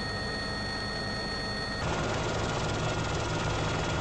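Steady helicopter engine and rotor noise as heard from aboard, a continuous low hum with a few steady whining tones. The sound changes abruptly about two seconds in, where one aerial clip is cut to the next.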